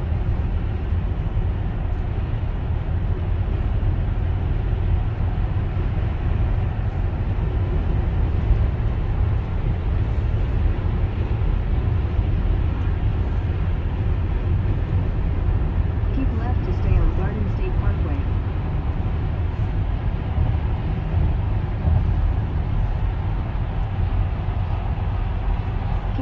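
Steady road and engine noise inside a car's cabin at highway speed, a low, even rumble of tyres and wind.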